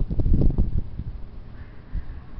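Wind buffeting the microphone in irregular low gusts, strongest in the first half second and then easing.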